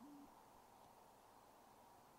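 Owl hooting faintly: one short, low, steady note at the very start, then near silence with a steady hiss.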